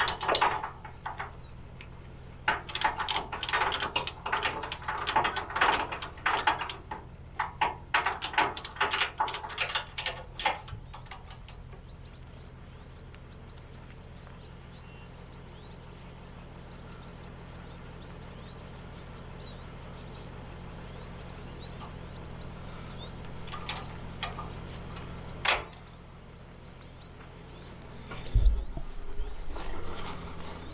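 Metal tie-down hooks and hardware clinking and rattling in quick, irregular bursts for about ten seconds while a truck's front end is hooked down to a car trailer. A steady low hum then runs on, with a single sharp knock about three-quarters of the way through.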